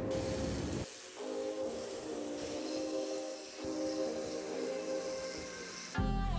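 Background music with a steady spray hiss under it, from a pressure washer lance jetting water onto a metal extractor grille. The music comes in about a second in.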